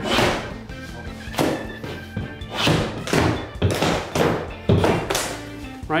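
Claw hammer knocking and prying at a door's trim casing to lever it off the jamb, about eight sharp knocks over six seconds, over background music.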